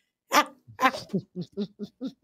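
A woman laughing heartily in a run of short bursts, about six in two seconds.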